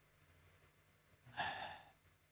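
Near silence, then a single audible sigh of about half a second, a little past the middle.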